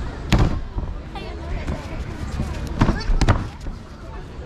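Judoka thrown onto foam judo mats, the body and the breakfall arm slap landing in sharp smacks: one about a third of a second in, then two more close together near the end.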